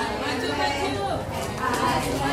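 Overlapping chatter of a group of young children and their teachers talking at once.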